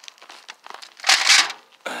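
Disposable aluminium foil pan crinkling as it is slid into a steel trash can, one short burst of about half a second near the middle.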